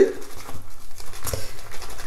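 Black synthetic shaving brush working soap into lather in a bowl, with soft, irregular wet squishing and patter.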